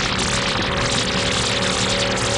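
Synthesized intro sound design: a loud hiss of noise with a held chord of low electronic tones coming in under it just after the start.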